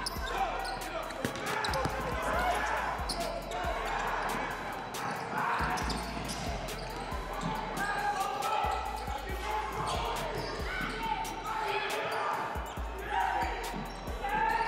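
A basketball dribbling and bouncing on a gymnasium's hardwood floor during play, a string of sharp knocks in the echoing hall, under the shouting voices of players and spectators.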